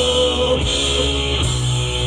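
A rock band playing live, with drums, electric bass and keyboard, and a lead singer's voice.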